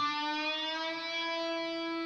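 Electric guitar note picked at the seventh fret of the G string and bent up a full tone. It glides up in pitch over the first half-second and is then held steady at the target pitch.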